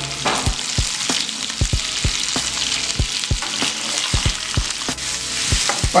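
Butter, sliced garlic and guajillo chili frying around pieces of dogfish fillet in a hot stainless steel skillet: a steady sizzle with frequent irregular pops and crackles as the butter melts into the hot fat.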